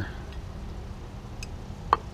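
A single sharp metallic click near the end, with a fainter tick shortly before it, as the hand guard's metal bar is handled and set against the motorcycle's handlebar. Low, steady background noise runs underneath.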